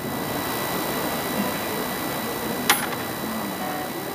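Steady outdoor background noise with no guitar playing, broken once by a single sharp click a little before three seconds in.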